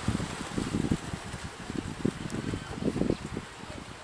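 Low, irregular rumbling background noise, with small thumps, typical of wind buffeting a microphone.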